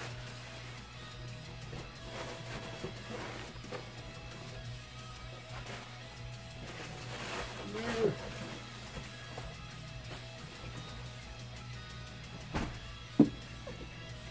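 Quiet background music, with crumpled packing paper rustling and a cardboard box being handled. A sharp knock comes near the end.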